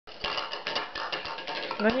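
A spoon knocking and rattling inside a small wooden bowl, handled by a toddler: an irregular clatter of quick little knocks, several a second, each with a short ring. A voice begins near the end.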